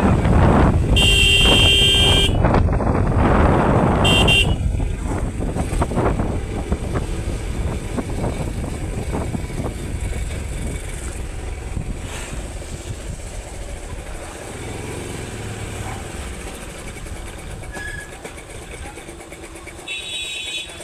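A motorcycle ridden along a road, its engine and road and wind noise loud at first and fading gradually as it slows down. A horn sounds about a second in for about a second, and briefly again about four seconds in.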